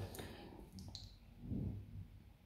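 Quiet pause with a couple of faint, short mouth clicks a little under a second in, then a soft, low hum of a man's voice around a second and a half in.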